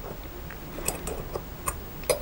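Light metallic clicks as the stainless steel wrench slot of an ATuMan K1 pocket tool is worked on a hex bolt head, a few faint ticks scattered over two seconds.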